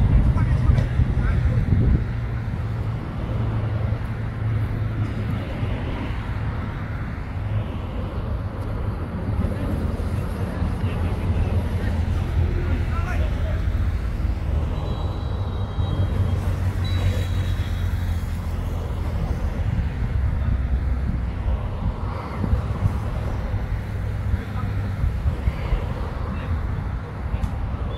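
Steady low rumble of outdoor background noise throughout, with faint, distant voices from the pitch now and then.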